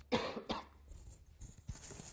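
A person with a cold coughing: two coughs close together at the start, then a softer one near the end.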